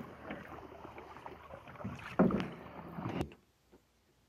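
Canoe paddles dipping and pulling through lake water, with irregular splashes and knocks, the loudest a little after two seconds in. The sound cuts off suddenly near the end.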